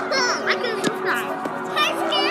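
Children's high-pitched voices calling out and chattering over background music, with a few sharp clicks.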